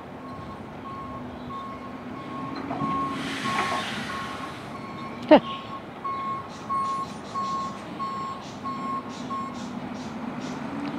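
Garbage truck backing up: its reversing alarm beeps steadily, about two beeps a second, over the low running of the truck's engine. A burst of air-brake hiss comes about three seconds in, and a short sharp squeal falling in pitch, the loudest sound, about five seconds in.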